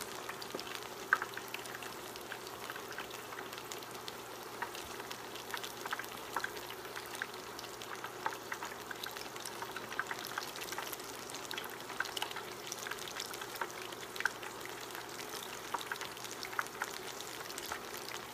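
Flour-and-cornmeal battered green tomato slices deep-frying in hot oil: a steady sizzle dotted with many small crackles and pops.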